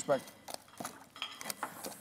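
A few scattered light clicks and clinks of small hard objects being handled, spread irregularly across the two seconds.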